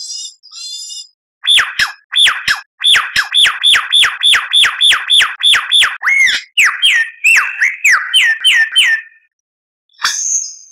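Superb lyrebird song. It opens with a faint buzzy chatter, then a fast run of loud, downward-sweeping whistled notes, about three a second, each starting with a sharp click. Near the end the notes turn arched and more varied.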